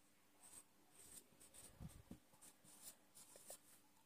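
Faint scratching of a felt-tip marker writing on a whiteboard, in short irregular strokes as letters are drawn.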